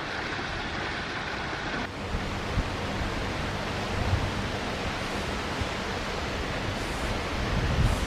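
Water splashing steadily down a small artificial rock waterfall, then, after a cut about two seconds in, a steady rushing noise broken by irregular low rumbles of wind on the microphone.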